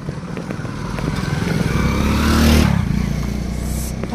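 A small motorcycle engine riding past close by, growing louder to a peak about two and a half seconds in and then fading away.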